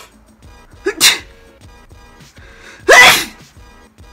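A woman sneezing twice, about a second in and again near the end, the second longer with a rising voiced lead-in.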